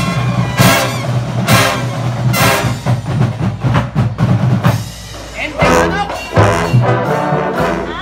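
Drum and bugle corps playing loud sustained brass chords with sharp percussion hits about once a second. The sound drops briefly just before the five-second mark, then the brass comes back in.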